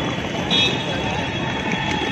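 Steady outdoor background of traffic and indistinct crowd voices, with a thin high steady tone joining about half a second in.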